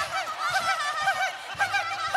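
A high singing voice running through quick, repeated rises and falls in pitch, a fast ornamented vocal run in a live Bollywood-style stage song. A low steady accompaniment tone comes in near the end.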